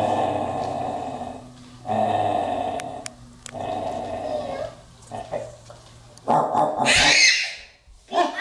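A man's voice making long, drawn-out animal growls, three in a row, in play as a werewolf. Near the end comes a short, loud, high-pitched cry.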